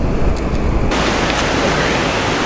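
Steady, loud rushing of fast river current, mixed with wind on the microphone. About a second in, the sound turns suddenly brighter and hissier.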